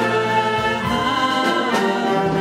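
Concert wind band playing sustained chords, with clarinets and saxophones among the instruments.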